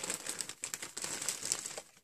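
Plastic bag crinkling as it is handled, a continuous crackly rustle that stops near the end.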